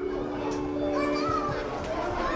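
Children's voices chattering and calling as in a playground, over a held musical chord that stops near the end.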